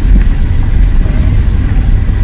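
Car cabin noise while driving: a steady, loud low rumble of the engine and tyres on the road.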